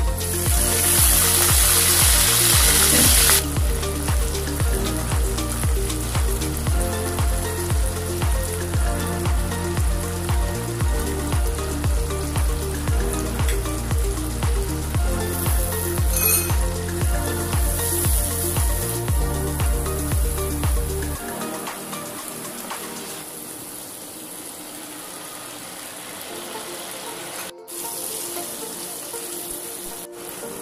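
Water poured into a wok of hot oil and frying prawns, hissing and spitting loudly for about three seconds, over background music with a steady beat. About two-thirds of the way through, the music's beat drops out, leaving quieter sizzling from the pan.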